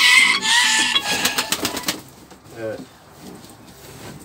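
A rooster crowing, its long call ending in a falling note about half a second in. A quick run of sharp clicks follows about a second in, then it goes quieter.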